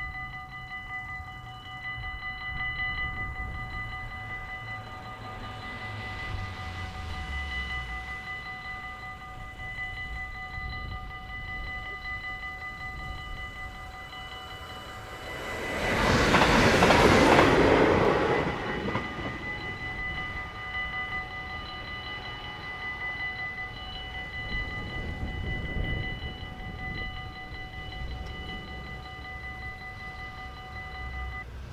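Level-crossing warning bells ringing steadily throughout, a fast repeated ringing on several tones. About 16 seconds in, a train passes quickly and drowns them out for about three seconds.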